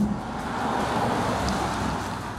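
Audi S8 with its 4-litre twin-turbocharged V8 driving past at speed, a steady rush of engine and tyre noise that eases slightly near the end.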